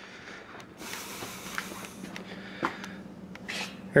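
Faint steady hiss over a low steady hum, with small rustles and clicks of a hand-held camera being moved and a couple of short breaths close to the microphone, one near the end.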